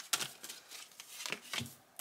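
A deck of tarot cards handled and shuffled by hand: a string of short card snaps and flicks, quieter near the end.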